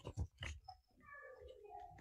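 A few short, soft clicks, then a faint, brief vocal sound drifting down in pitch, heard through a video-call connection.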